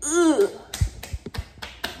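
A short voiced exclamation whose pitch rises and falls, then about six light taps over the next second and a half.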